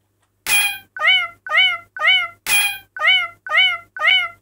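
BandLab's 'Cat' metronome sound playing at 120 beats per minute: short meows about two a second, beginning half a second in. Every fourth beat, marking the start of each 4/4 bar, is a different, sharper sound.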